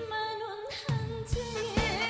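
A woman singing a Korean song with wide vibrato over a band backing track with a steady drum beat. Her voice comes in just as the instrumental intro ends.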